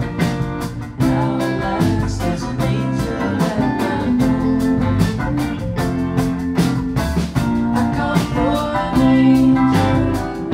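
Live band playing a song: acoustic and electric guitars over a steady drum beat, with singing.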